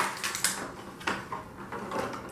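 Thin clear plastic blister-pack tray crackling and knocking as small plastic toy figures are handled in it, a few short crackles about half a second apart.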